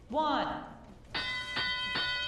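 Recorded countdown voice of an FTC field-control system saying its last number, then a bell struck twice about half a second apart and left ringing. The bell marks the start of the driver-controlled period of the robot match.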